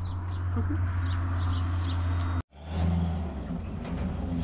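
Pickup truck engine running with a steady low hum, then moving off; the sound cuts out completely for a moment about halfway through. Small birds chirp in the background.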